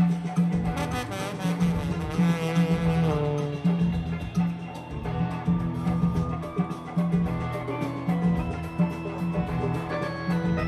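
Live afrobeat band playing: the horn section of saxophones, trombone and trumpet plays a line over bass, drums and congas for the first few seconds, after which steadier held notes continue over the same driving bass and percussion groove.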